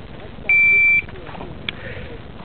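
Electronic shot timer's start beep: one steady high-pitched tone about half a second long, the signal for the shooter to draw and fire. A faint click comes near the end.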